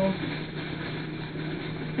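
Room tone: a steady low hum with a faint even hiss.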